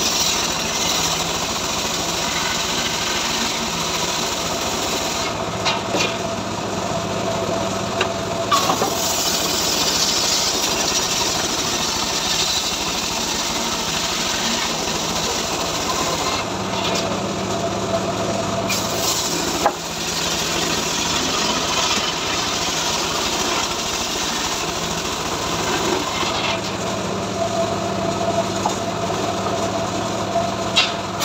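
Homemade engine-driven circular rip saw (srekel) cutting lengthwise through a mahogany log: steady saw-through-wood noise over the running engine, with a few short sharp knocks.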